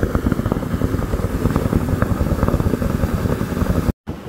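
Wind buffeting the microphone: a steady low rumble that cuts off abruptly just before the end.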